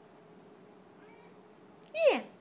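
Domestic cat giving a whiny meow near the end that falls steeply in pitch. Before it there is only a faint steady hum in a quiet room.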